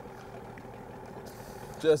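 Boat engine idling in the background, a low, even hum.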